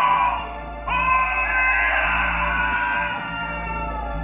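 Live stage score music: a steady low drone under loud swells, one fading in the first half-second and another starting suddenly about a second in and slowly falling in pitch as it fades.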